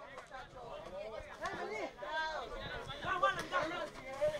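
Faint, distant voices calling and chattering across an outdoor football pitch, picked up by the field microphone while play is stopped for a throw-in.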